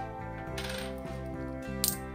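50p coins clinking as they are handled, with a sharper clink near the end, over background music.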